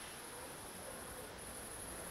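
Faint, steady high-pitched chirring of crickets, with a brief break a little past halfway.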